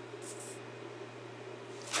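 Quiet room tone with a steady low hum, and one brief soft rustle a quarter of a second in, of a hand brushing over paper.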